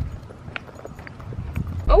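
Footsteps of a person and a leashed dog walking on a concrete sidewalk: light, irregular taps over faint outdoor noise. Near the end a low steady car-cabin hum cuts in.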